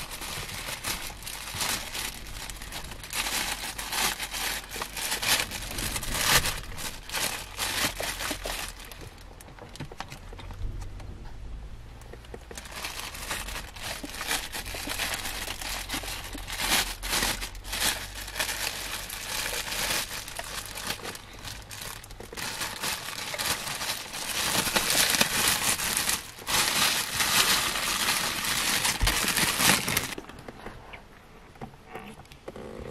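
Plastic food packaging and a bread bag crinkling and rustling as a sandwich is handled, in stretches with a pause of a few seconds near the middle.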